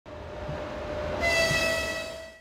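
A Russian Railways electric locomotive rolling slowly into a station with a low rumble, then sounding its horn about a second in: one steady, held note.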